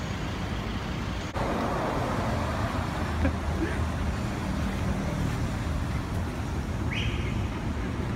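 Road traffic on a city street: a steady rumble of engines and tyres from passing vehicles, with a brief high chirp near the end.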